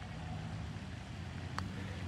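A single light click of a putter striking a golf ball, about one and a half seconds in, over a faint steady hum of distant road traffic.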